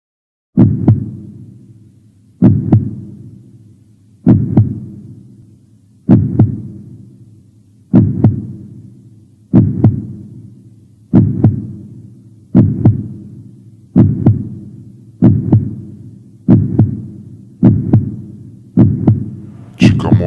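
Heartbeat sound effect: deep double thumps, each fading away, repeating steadily and gradually speeding up from about one every two seconds to about one a second.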